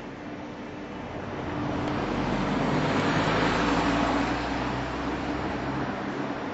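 A motor vehicle driving past on the street, its engine and tyre noise building over the first couple of seconds, loudest around the middle and easing off near the end.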